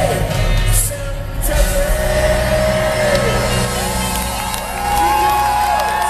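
Live pop-rock band performance heard from within the crowd in a large hall: long held sung notes over the band, with audience whoops and shouts.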